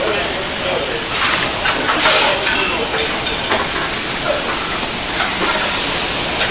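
Hot sauté pan just hit with vegetable stock, sizzling and hissing steadily as the liquid boils on the hot metal around the pan-fried Dover sole.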